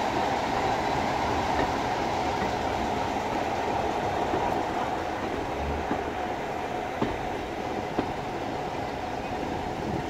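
Passenger train carriage running along the track with a steady rumble, and two sharp clicks of the wheels crossing rail joints about a second apart near the end.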